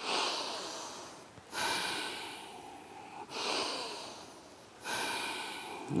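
A group of people breathing forcefully in unison in a breathwork exercise: four strong breaths about a second and a half apart, each starting sharply and tapering off.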